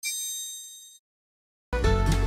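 A bright, high-pitched ding, a chime sound effect that rings and fades over about a second before cutting off. Near the end, music with plucked strings starts up.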